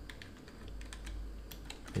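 Typing on a computer keyboard: a run of light, irregularly spaced key clicks.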